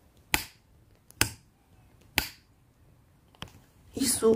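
Four sharp, separate clicks or snaps, about a second apart, with quiet between them.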